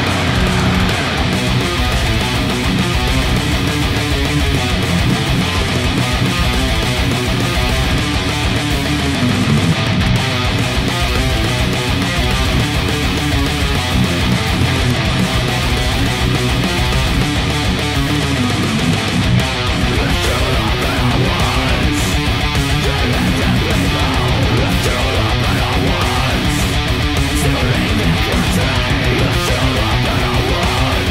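An ESP LTD electric guitar playing a metal song, with strummed riffs that sound without a break. From about twenty seconds in, a fast, even pulse joins underneath in the low end.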